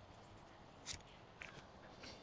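Near silence, with two faint short clicks about a second in and half a second later.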